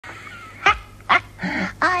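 Hare puppet's voice laughing: two short, sharp laughs about half a second apart, the first dropping steeply in pitch, then a breathier one, just before speech begins.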